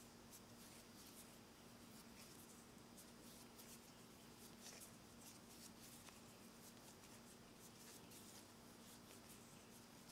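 Near silence: faint, scattered light ticks and rustles of cotton thread being wrapped into double stitches on a tatting needle, over a low steady hum.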